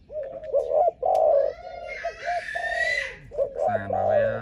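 Spotted dove cooing: a run of low coos repeated through the whole stretch, with a higher rising call laid over it about two seconds in.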